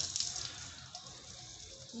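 Water spraying from a garden hose spray nozzle onto a bicycle and the floor, a steady hiss that is louder for the first half second and then softer.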